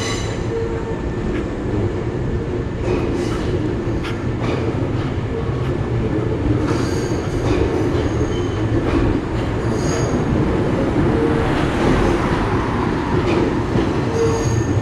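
Hankyu electric train running on the tracks behind a roadside noise wall: a steady rumble, with brief high wheel squeals around the middle.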